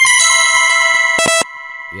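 TradingView's 'Alarm Clock' execution notification sound playing as a preview: a loud electronic bell-like ring of several steady tones at once. It stays loud for about a second and a half, then drops to a softer tail.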